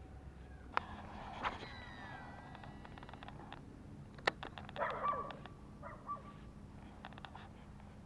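Sharp clicks and small ticks from fishing tackle being handled while a lure is changed to a popper, three clicks standing out. Short, faint animal calls come in between, loudest about five seconds in.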